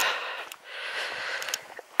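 A person's breathing close to the microphone while walking: a sharp in-breath at the start, then a longer, softer breath.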